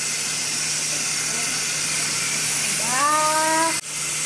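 Kitchen sink tap running, a steady even hiss of water. Near the end a voice calls out one drawn-out, rising note, then the sound cuts off abruptly.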